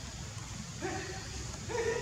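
Two short, steady-pitched cries from a macaque: one just under a second in and a second, higher one near the end.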